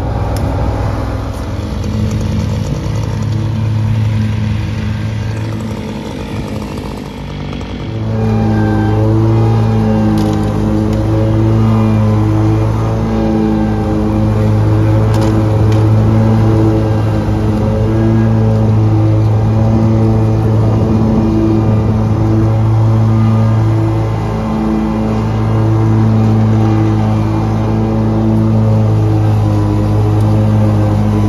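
Tractor engine running steadily under load while pulling a rotary mower. It gets louder about eight seconds in.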